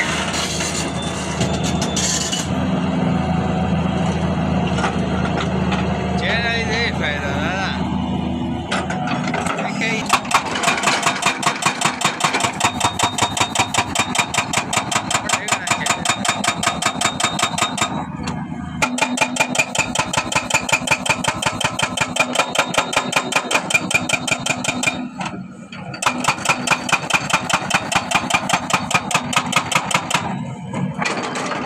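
Doosan excavator's diesel engine running, then from about ten seconds in its hydraulic breaker hammering rock in the trench: a fast, even run of blows, about four or five a second, stopping briefly twice.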